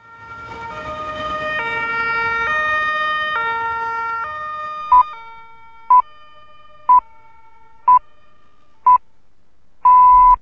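Two-tone emergency-vehicle siren alternating between a high and a low note about once a second. It swells in and fades away by about five seconds in. Then a radio time signal follows: five short pips a second apart and a longer sixth pip at the end, marking the hour.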